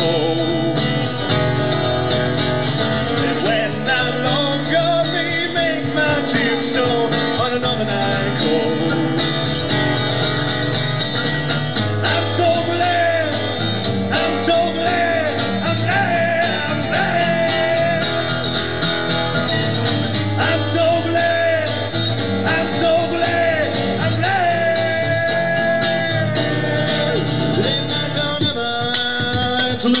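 A man singing long, sliding held notes over an acoustic guitar, live.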